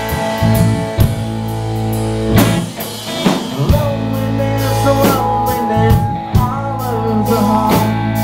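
Rock band playing live on electric guitars, bass and a drum kit, the drum and cymbal hits cutting through held guitar chords.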